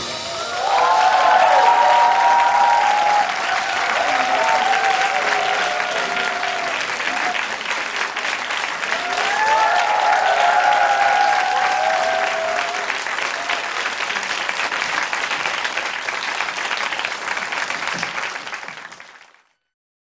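Audience applauding and cheering, with shouts rising above the clapping twice, about a second in and again about nine seconds in. It fades out near the end.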